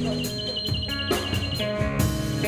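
A live band plays a guitar riff with drums and cymbal strikes. Above it a high, wavering theremin tone is held with vibrato, dropping out briefly partway through.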